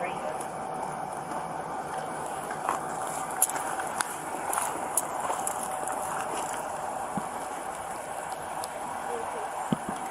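Steady outdoor background noise heard through a police body-worn camera, with faint, indistinct voices and a few small clicks about three to five seconds in.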